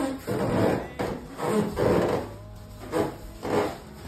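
A bathtub squeaking and creaking in a series of about six rubbing squeaks under a person's weight: floor tile grouted tight against the tub rubbing on it as the second-floor subfloor flexes.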